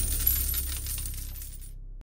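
Logo-sting sound effect: a shower of coins clinking and jingling over the tail of a low boom, thinning out and stopping near the end.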